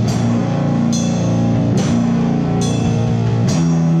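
Rock band playing live: electric guitar, electric bass and drum kit, with low sustained chords and a cymbal-and-drum accent about once a second.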